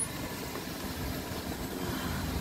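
Car engine idling at low speed, a steady low hum heard from inside the car.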